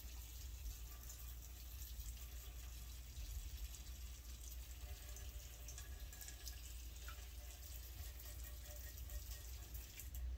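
Quiet workshop room: a steady low hum with faint, scattered small clicks and handling noises.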